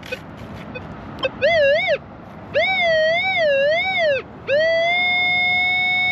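Metal detector sounding a target tone over buried metal: the pitch rises and falls with each sweep of the coil in two groups of passes, then holds steady near the end.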